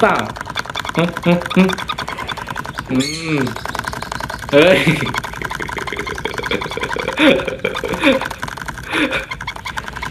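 A sun conure pecking rapidly at a small plastic cup while lying on its side, making a fast, steady clicking rattle. A man's laughter and short exclamations break in over it several times.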